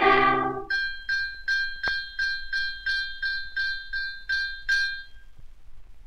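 A small bell struck rapidly on one high note, about a dozen times, roughly three a second, then left to ring out, on an old 78 rpm shellac recording. The children's choir sings briefly at the start before the bell comes in.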